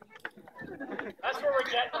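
Speech: voices, with a call of "Ready?" near the end.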